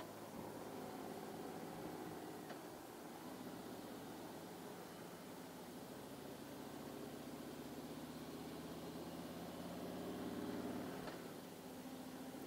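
Harley-Davidson Street Glide's V-twin engine running steadily at low road speed as the motorcycle rides through an intersection and a turn, under a light hiss of wind and road noise. The engine note swells slightly near the end.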